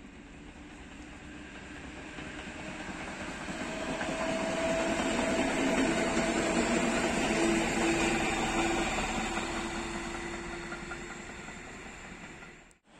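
A Polish EN57 electric multiple unit running past close by: the noise of wheels on rails swells to a peak in the middle and then fades as it moves away. A steady hum comes from the train while it is closest.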